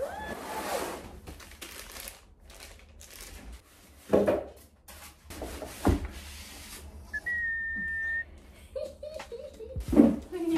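Cardboard box flaps and plastic wrapping rustling and thudding as a boxed scooter is unpacked, with two sharp thuds about four and six seconds in. Near the end comes a single steady, high whistle-like tone lasting about a second.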